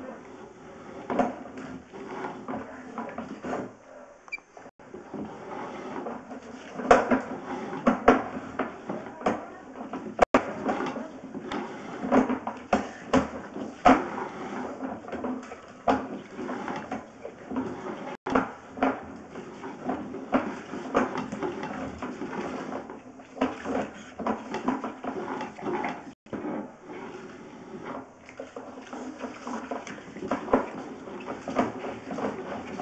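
Sewer inspection camera's push cable being pulled back out of the pipe and fed onto its reel, with a steady run of irregular clicks, knocks and rattles over a low hum.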